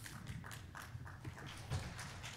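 Faint hall room noise with a scattering of light, irregular taps and knocks.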